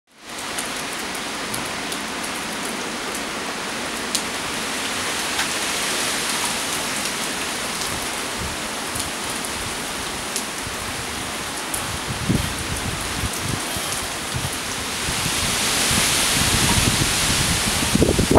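Steady rain falling on wet pavement and parked cars, with scattered sharp drip ticks. In the second half, gusts of wind rumble on the microphone and grow louder near the end.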